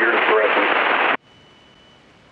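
Air traffic control radio transmission: a controller's voice, thin and band-limited, cuts off abruptly about a second in. Faint hiss with a faint steady high tone follows.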